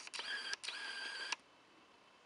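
Camera lens autofocus motor whirring in two short runs with a brief break between them, a steady high whine, as the lens hunts for focus in low light.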